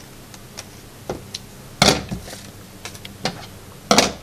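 A few sparse snips and clicks of scissors cutting out a shape through two layers of paper, with a louder knock a little before the halfway point and another just at the end.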